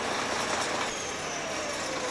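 Crawler dozer's diesel engine idling, a steady even rumble and hiss, with a faint whine slowly falling in pitch through the second half.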